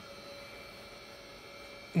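Quiet, steady whir with a faint constant tone from the cooling fans of a running Juniper EX3300-24T network switch.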